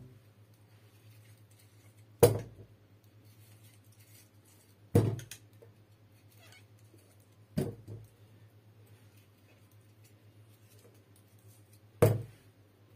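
Small whole tomatoes dropped one at a time into an empty white pot: four dull thuds a few seconds apart, the last near the end. A low steady hum runs underneath.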